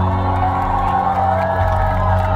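The song's closing chord held with a steady low bass tone, while the audience cheers and whoops over it.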